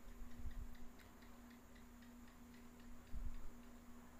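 Faint, regular ticking, about four ticks a second, over a steady low hum. A few dull low bumps come near the start and again about three seconds in.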